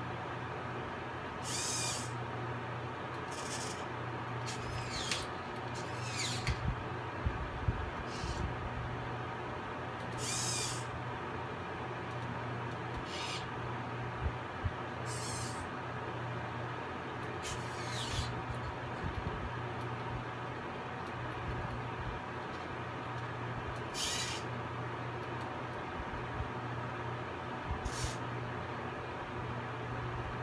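Hobby servo motors in a 3D-printed robot hand and wrist whirring in short bursts of about half a second, a dozen or so times, as the fingers and wrist move. Under them runs a steady electrical hum, with a few low knocks.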